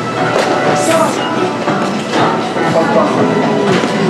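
Music playing, with voices heard under it.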